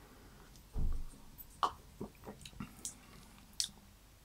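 A person sipping milk tea and tasting it: a soft low swallow just under a second in, then several small lip smacks and mouth clicks.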